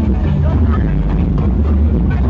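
Loud, bass-heavy electronic dance music from a carnival sound system, with a steady pulsing beat, mixed with people's voices close by.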